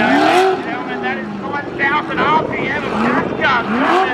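Supercharged engine of a Holden VK Commodore revved hard again and again through a burnout, its pitch climbing and dropping several times, with the rear tyres spinning in smoke.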